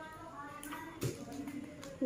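Faint handling of newspaper and a glue bottle on a table, with a sharp tap about a second in and a few lighter ticks. A faint held voice-like tone trails off in the first half-second.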